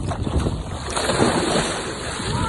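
A scuba diver in full gear jumping feet-first off a pier into a lake in a giant stride entry: a loud water splash about a second in, with wind buffeting the microphone.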